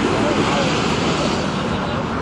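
Steady vehicle and traffic noise with indistinct voices in the background.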